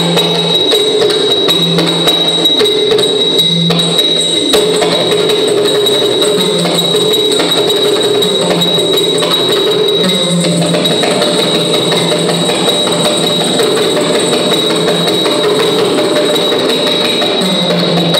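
Yakshagana dance accompaniment without singing: a maddale, the two-headed barrel drum, played continuously by hand, with small hand cymbals (taala) keeping time.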